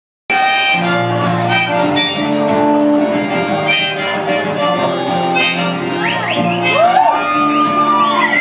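Harmonica played live from a neck rack in long held notes, with acoustic guitar strumming underneath; near the end, whoops rise from the audience.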